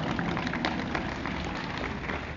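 Lecture-hall audience applauding: a dense, irregular patter of many hands clapping.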